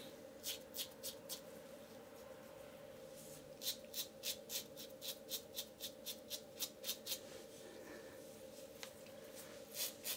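Titanium safety razor scraping through lathered stubble in short, faint strokes. A few strokes come first, then after a pause a quick run of about three strokes a second for several seconds, and a few more near the end.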